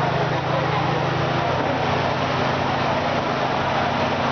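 Busy food court ambience: a steady low mechanical hum from a running motor under a constant wash of background crowd chatter.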